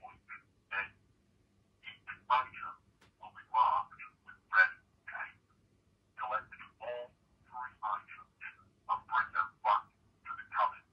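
A caller's voice coming through a telephone handset, thin and cut off in the lows and highs as a phone line makes it, speaking in short phrases and giving instructions, over a faint steady hum.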